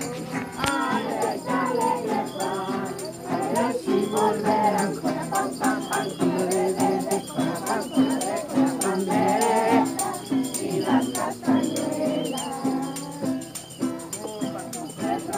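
A group of voices singing a Christmas carol together, with rattles shaken to a steady beat.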